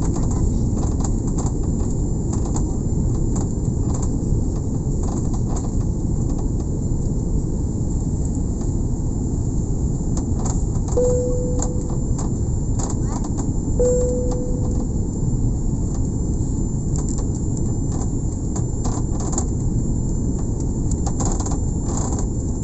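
Steady cabin roar of a jet airliner descending on approach, engine and airflow noise heavy in the low end. Two short beeps sound about three seconds apart midway through.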